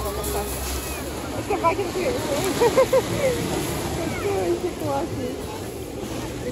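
Indistinct background chatter of several voices over a steady low background rumble.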